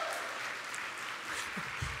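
Audience applauding, the clapping slowly fading away, with a soft low thump on the microphone near the end.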